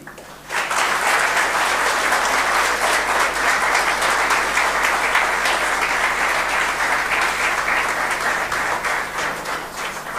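A congregation applauding: many hands clapping together, starting about half a second in, holding steady, and easing off near the end.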